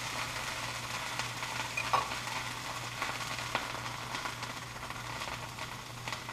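Margarine-spread bread sizzling in a hot iron stovetop sandwich press over a gas flame, a steady hiss dotted with small crackles as the fat melts and pops. A steady low hum runs underneath.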